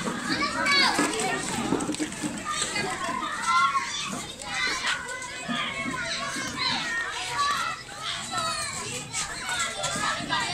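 Many young children's voices calling and chattering over one another as they play, high-pitched and overlapping throughout.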